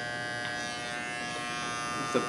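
Small electric razor running unloaded with a steady, even buzz.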